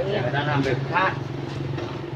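The motorbike engine of a xe lôi (motorbike-pulled cart) idling with a steady low hum, under brief faint voices.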